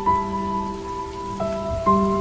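Background music of slow, held notes over a sustained low note, the notes changing about one and a half seconds in and again near the end, with a steady hiss beneath.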